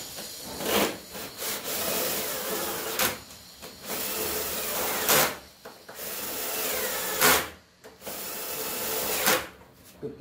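Cordless drill-driver run in repeated spells of about two seconds, about five times, each spell ending in a sharp louder burst before a short pause.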